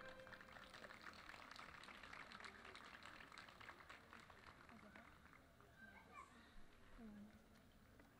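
Near silence between pieces of a live string trio, with faint murmuring voices from the seated audience and a few faint scattered clicks.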